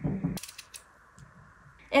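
Potato halves dropped into a stainless steel pot of water: a short plop in the first half-second, followed by a few light clicks.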